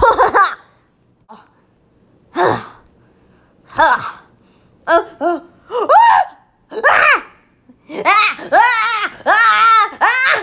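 A child's voice making short wordless vocal sounds and laughs in separate bursts, coming closer together near the end.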